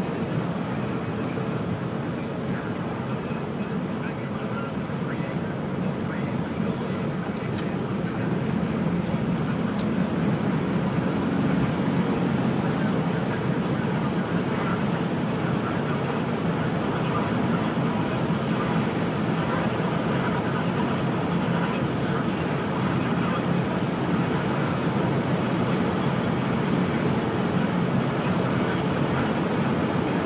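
Steady road noise inside a moving car's cabin, growing a little louder about eight seconds in.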